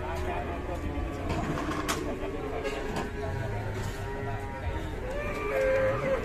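Indistinct voices of several people talking, over a steady low background hum.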